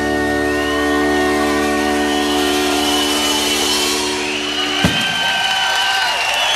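A live rock band holds its final chord, which is cut off by a last sharp drum hit a little before five seconds in. The audience cheers and whistles over the chord and after it.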